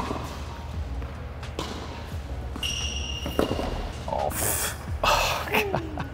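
Tennis ball struck by rackets in a rally on an indoor hard court: a few sharp hits spaced one to two seconds apart, echoing in the hall, with a brief high squeak near the middle.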